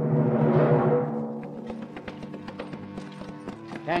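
A short music bridge swells and fades over the first second or so. Then come the steady, evenly spaced clip-clops of a horse's hooves drawing a cart at a slow pace, a radio sound effect, under a lingering held musical tone.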